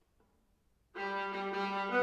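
Solo viola begins playing about a second in, after near silence: a low bowed note starts suddenly and is held steady.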